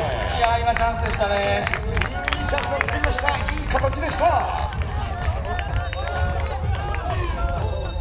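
Background music playing with voices calling out and crowd noise, with scattered short knocks.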